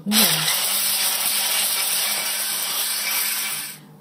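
Electric stick blender with a whisk attachment running steadily, whisking a thick cottage cheese and sour cream cream in a stainless steel bowl; it starts at once and switches off just before the end.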